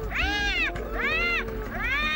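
An animal's high, wailing calls, three in quick succession, each rising and then falling in pitch over about half a second, over a steady low background tone.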